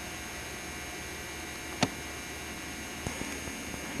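Steady hiss with a faint hum, the noise floor of a 1990s camcorder tape recording, broken by one sharp click a little under two seconds in and a fainter one near three seconds.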